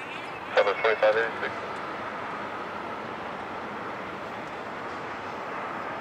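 Air traffic control radio: a short clipped transmission about half a second in, then a steady radio hiss between transmissions.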